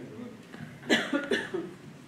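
Two short coughs about half a second apart, heard over low voices.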